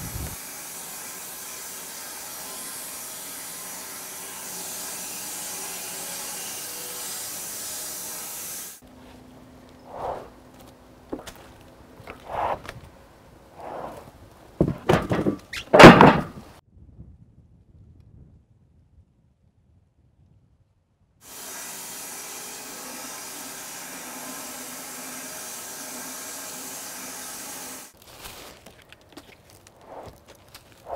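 Homemade wide-cut bandsaw mill running steadily as it cuts through a cherry log, stopping abruptly about nine seconds in. Then come a series of wooden knocks and thunks as the cut board is handled, the loudest about sixteen seconds in, and a few seconds of dead silence. The mill runs steadily again from about twenty-one seconds in until shortly before the end.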